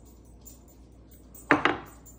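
Two quick knocks close together about one and a half seconds in, as a small measuring cup is set down on a wooden kitchen countertop.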